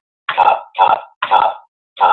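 NVDA screen reader's synthesized voice quickly announcing web links in three short bursts, about one every half second, as the Tab key moves focus from link to link.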